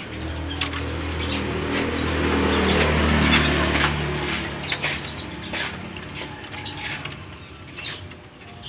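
Junglefowl pecking and scratching among rubble, a scatter of small clicks and taps. A low hum comes in with them, swells to its loudest about three seconds in and fades out by about five seconds.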